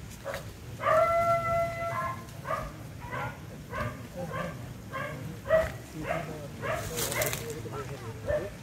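A dog barking: one drawn-out call about a second in, then a run of short barks about two a second. A brief rustling burst comes near the end.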